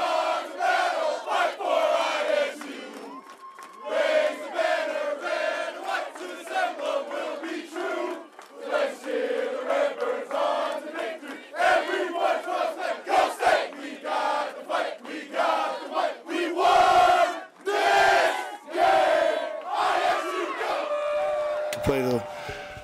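A team of football players shouting and chanting together in a victory celebration, in loud repeated bursts of many voices at once.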